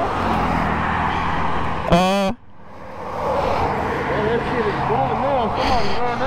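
Highway traffic passing close by: a steady rush of tyre and engine noise that swells, breaks off suddenly about two seconds in, then builds again. A short voice sound comes just before the break.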